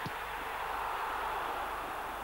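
Football stadium crowd cheering a goal, a steady din of many voices that swells about a second in and then eases off.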